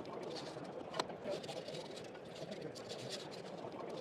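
Low steady background noise of a busy hall with faint distant voices, and a single sharp click about a second in as the railing section's bracketed guide slides down onto the post.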